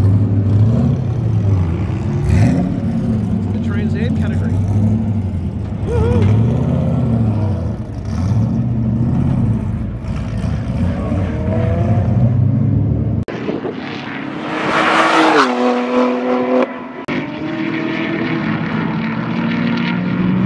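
Race car engines running in pit lane, their low note rising and falling with the throttle as the cars pull away. About two-thirds through, the sound cuts abruptly to another engine whose note climbs and then holds, with a rush of noise above it.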